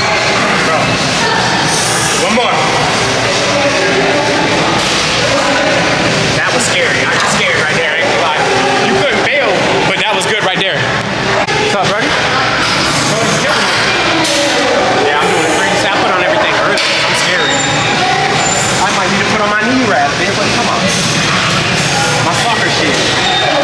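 Indistinct voices with no clear words, over a steady, loud background of noise.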